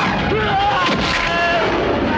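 Film fight sound effects: a heavy kick impact and a whoosh as a body is sent flying, with shouting and the background score mixed underneath.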